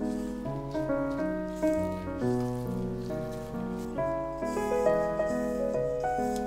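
Gentle background piano music: a melody of held notes over a slowly moving bass line.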